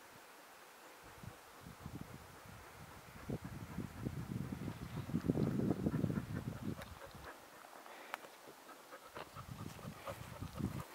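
A dog panting close by, building to its loudest about halfway through and fading out about seven seconds in; a few light clicks follow near the end.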